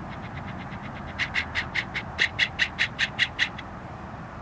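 A bird calling: a rapid series of short, sharp, high notes, faint and quick at first, then louder and a little slower from about a second in, stopping just before the end.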